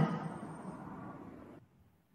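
Simulated mountain wind noise from the soundtrack fading out over about a second and a half, leaving near silence.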